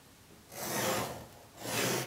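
Pencil drawn along a ruler across paper in two long scraping strokes, the first starting about half a second in and the second near the end.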